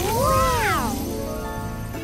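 A cartoon creature's meow-like cry: one call rising and then falling in pitch over about a second, over background music.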